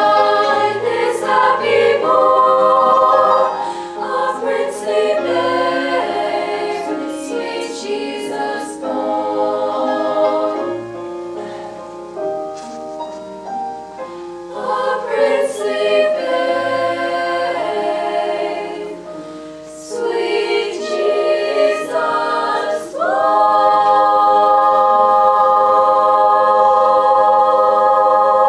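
Girls' choir singing unaccompanied in several-part harmony, closing on a long held final chord for the last few seconds.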